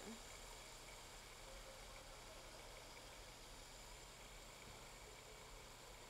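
Food processor running with its blade attachment, a faint steady whir, grinding pumpkin seeds and dates while melted cocoa butter is poured in.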